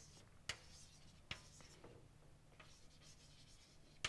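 Faint chalk writing on a blackboard: soft scratching strokes, with two sharp chalk taps in the first second and a half.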